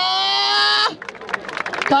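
A man's long, drawn-out shout held on one slightly rising note, cutting off about a second in, followed by quieter crowd noise with a few short clicks.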